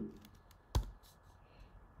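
A few keystrokes on a computer keyboard while typing code. There is one sharp, louder key click a little under a second in, and the others are faint.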